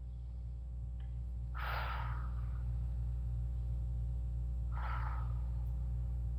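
Two slow, deliberate breaths, one about a second and a half in and one about five seconds in, part of a guided set of three purposeful breaths, over a steady low hum.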